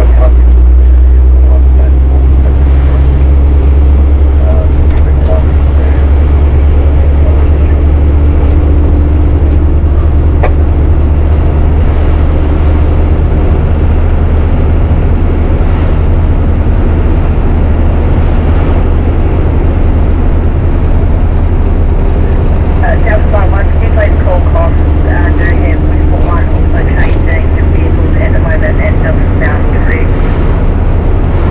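MAN 4x4 truck's diesel engine running steadily as the truck drives at town speed, a loud, constant low drone.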